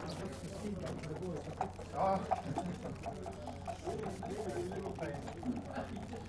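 Indistinct background conversation of several voices, over a steady low hum.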